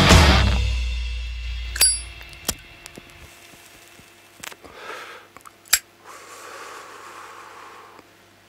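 The end of a heavy-metal band's song: the last low bass note rings out and dies away over about two seconds. Then a few sharp clicks and a short metallic ding, with faint room noise between them.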